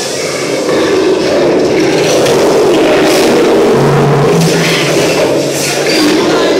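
Loud, steady rushing noise of an amusement ride in motion through a dark section, with a low hum coming in about four seconds in.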